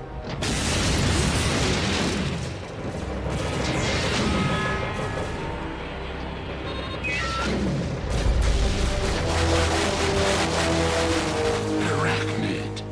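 Animated sci-fi battle soundtrack: a dramatic score under repeated booming blasts and mechanical clanks, with a couple of falling whooshes. The blasts start about half a second in, and a heavy low rumble hits around eight seconds.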